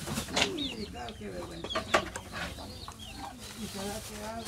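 Chickens clucking: a scatter of short calls.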